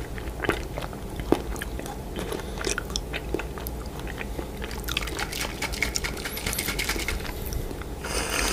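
Close-miked chewing of blue candy-coated strawberries, with crisp crunches of the hard coating; one sharp crunch about a second in is the loudest. From about five seconds in, a dense run of quick crackles and clicks.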